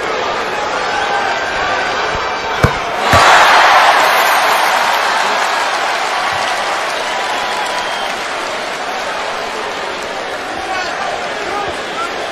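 Basketball arena crowd noise, with two sharp knocks about two and a half and three seconds in. The crowd then cheers louder and slowly settles, as a free throw is made.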